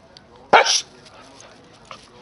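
A puppy gives a single short, sharp bark about half a second in while play-fighting with another puppy.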